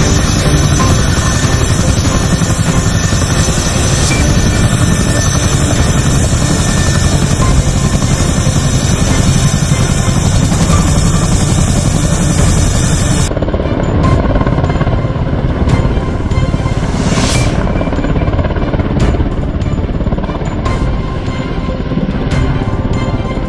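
Background music over the running engines and rotors of an Air Force HH-47 Chinook tandem-rotor helicopter on the ground. The higher hiss drops away suddenly about thirteen seconds in, leaving a duller sound.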